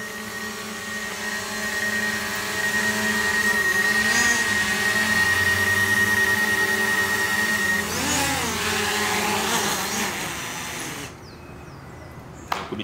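Small folding quadcopter drone's propellers buzzing with a steady high whine. The pitch shifts up and down a couple of times as the throttle changes, then the motors wind down and stop near the end.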